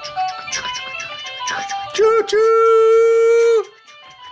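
Fisher-Price Little People St. Patrick's Day parade train toy playing its electronic tune of short bright notes. About two seconds in comes a short 'choo' and then a long held 'chooo', the loudest part, which stops shortly before the end.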